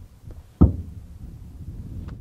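A single dull thump a little over half a second in, with a faint click just before it, followed by a low rumbling noise.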